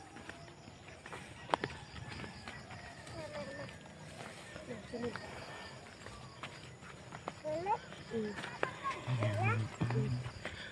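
Scattered sharp clicks and rustles, then a person's voice briefly near the end.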